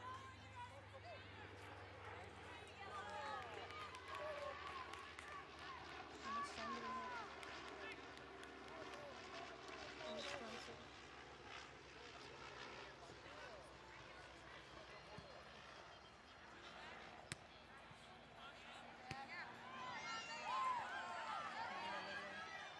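Faint, distant voices of players and spectators calling out across a soccer field, coming and going, with a single sharp knock late on.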